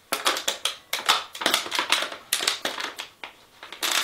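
Empty thin plastic water bottle crackling and crinkling in quick, irregular bursts as it is handled and pushed into a sock.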